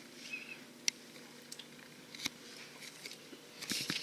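Faint rustling of cables in clear plastic bags being handled, with a couple of sharp clicks, about a second in and a little after two seconds, and more handling noise near the end.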